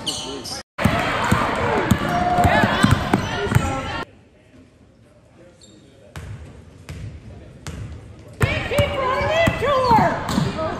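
Basketball game audio in a gym: a ball bouncing on the hardwood court, with players' and spectators' voices. It is interrupted by abrupt edits and a much quieter stretch near the middle.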